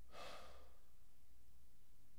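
A man's faint, short sigh, a breathy exhale shortly after the start, then quiet room tone over a low steady hum.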